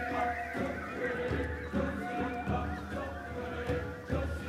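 Large youth choir singing held notes, with high voices sliding up and down in call-like glides above them, over hand-drum beats about twice a second.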